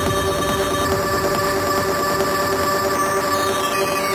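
Psytrance track's closing section: a held synthesizer chord drone with a sweeping, flanger-like filter effect that starts to fall about three seconds in.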